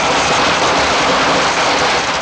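Loud, steady rushing hiss of a sound effect accompanying a shower of sparks, with no speech over it.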